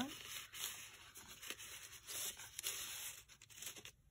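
Paper and card stock rustling and scraping as a large card is slid into a paper pocket and the folio is handled, with a few light clicks.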